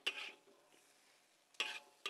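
Metal spatula scraping against a wok as a finished stir-fry is scooped out onto a plate: two short scrapes, one at the start and one near the end, with a light metallic ring on the second.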